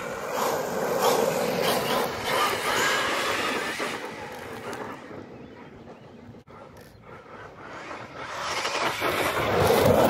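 Arrma Big Rock RC monster truck running hard on cracked asphalt: its electric motor and drivetrain whine over tyre noise. The sound is loud at first, fades in the middle as the truck pulls away, and rises again near the end.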